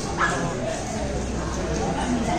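A dog gives a short bark about a quarter second in, over the chatter and steady noise of a busy indoor shopping hall.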